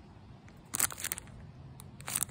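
Clear plastic bag holding an enamel pin crinkling as it is turned over in the fingers, with a short burst of crackles just under a second in.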